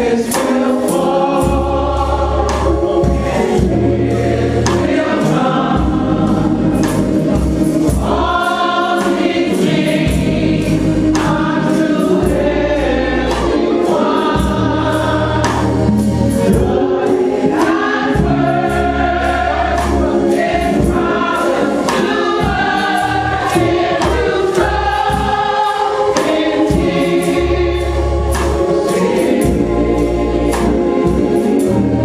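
Church choir singing a gospel song over deep, sustained bass notes that change every couple of seconds.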